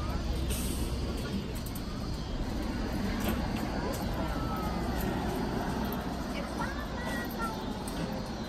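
Steady rumble of city traffic, with a brief hiss about half a second in.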